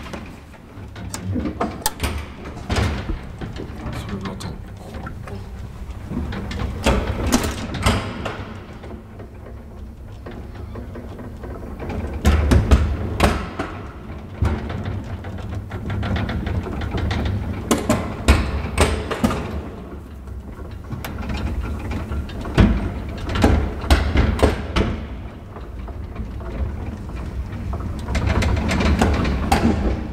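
Classic gated traction elevator car running in its shaft, heard from inside the car: a steady low hum with frequent knocks, clicks and rattles of the car and its gate as it travels.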